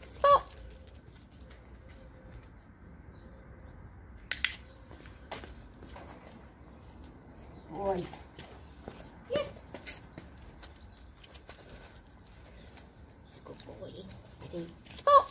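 A few brief, sharp voice-like calls spaced several seconds apart, one right at the start and others near the middle, with a couple of sharp clicks about four and five seconds in.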